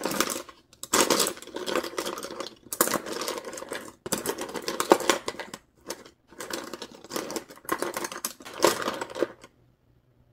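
A hand rummaging through a clear plastic case of paintbrushes, the brush handles rattling and clicking against one another and against the case. The clattering comes in several bursts with short pauses between them.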